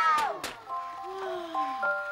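A woman's drawn-out exclamation trails off with a couple of clicks, then a simple electronic tune of plain beeping notes starts up, with a tone sliding down in pitch beneath it.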